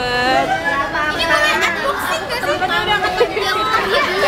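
A group of people talking and calling out excitedly over one another, with a shout of "yee!" near the end.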